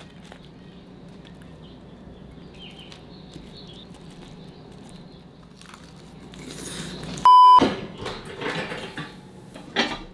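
Close-up chewing of spinach and egg, offered as eating ASMR, after a stretch of faint steady room hum. About seven seconds in, a short, sharp electronic beep cuts in as the loudest sound, and the chewing carries on after it.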